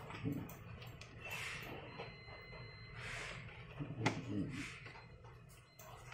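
Soft rustling and handling sounds with a sharp click about four seconds in, from hands working the battery pack and its wire connector inside an opened portable DVD player.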